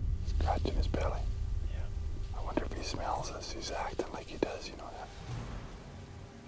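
Men whispering to each other in short hushed phrases, over a low rumble that fades away.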